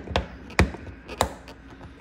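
Three sharp plastic clicks about half a second apart as a plastic trim tool pries at a push-pin rivet in a golf cart's plastic body panel.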